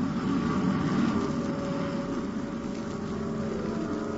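Old-time radio sound effect of a spaceship's rocket engines in flight: a steady rushing drone with a faint hum under it.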